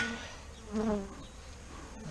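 Honeybees of a strong overwintered Saskatraz colony buzzing steadily over the opened hive's top bars, with a short vocal sound a little under a second in.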